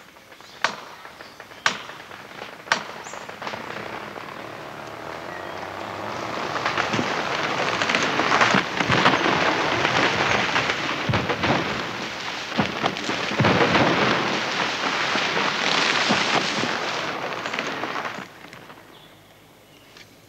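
A felled tree going over: a few sharp cracks about a second apart as the hinge wood gives, then a long crash and crackle of the trunk and its branches breaking down through the surrounding bush, loudest in the middle and dying away near the end.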